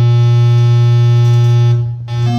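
Synthesized tone from the Willpower Theremin's software oscillator, which is played by moving the hands over infrared sensors. It holds one steady, loud, low buzzy note rich in overtones and dies away just before the end.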